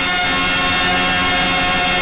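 A male voice holding one long, steady sung note, in the drawn-out style of Telugu padyam singing.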